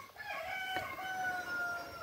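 A rooster crowing: one long call that lasts most of the two seconds, its pitch sagging slightly at the end.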